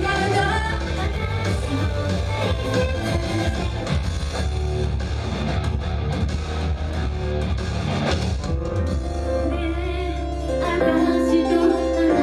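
An upbeat J-pop idol song over a live-house sound system, with female voices singing over bass, drums and guitar. About eleven seconds in, the music moves into a louder new section.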